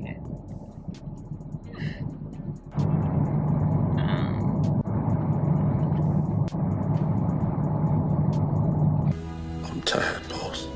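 Low car-cabin road noise from a moving car. About three seconds in, it is overlaid by louder steady background music. Near the end, a short film clip with music and a voice cuts in.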